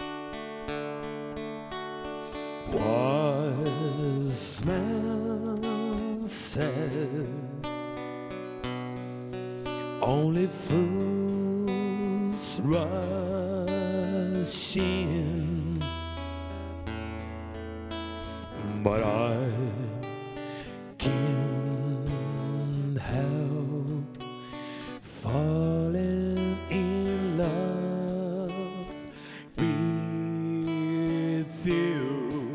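Man singing with vibrato to his own strummed Fender acoustic guitar. The guitar plays alone at first, and the voice comes in about three seconds in, in phrases with short breaks between them.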